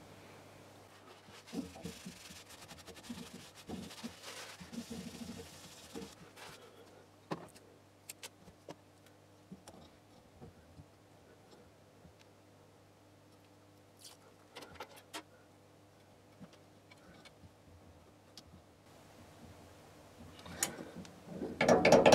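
Soft handling noises from hands fitting a small laser-diode module onto a laser cutter's head: light rubbing and scattered sharp clicks over a faint steady low hum. Near the end, louder ratcheting rasps begin as a zip tie is pulled tight.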